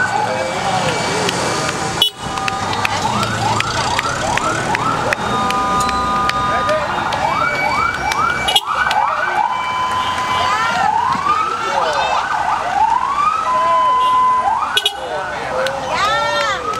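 Vehicle sirens yelping in quick rising-and-falling sweeps, several overlapping at once at about three a second, with some steady held tones among them, as a slow vehicle convoy passes.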